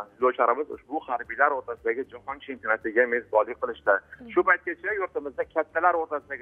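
A man talking continuously over a telephone line, his voice narrow-band and thin.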